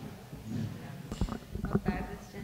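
Handling noise from a table microphone on its stand being taken hold of and moved: a quick string of low knocks and thumps in the second half, the loudest near the end.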